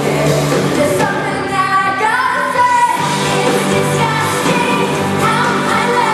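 Live pop-rock band with drums, guitars and keyboards playing under a female lead vocal singing, heard from the seats of a large theatre.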